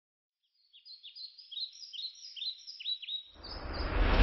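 Birds chirping: a quick run of short, falling chirps, several a second. About three seconds in, a swelling whoosh with a deep rumble rises over them.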